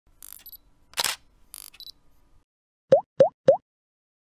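Logo-animation sound effects: a scatter of clicks and short swishes in the first two seconds, the loudest a sharp click about a second in, then three quick pops about a third of a second apart, each rising in pitch.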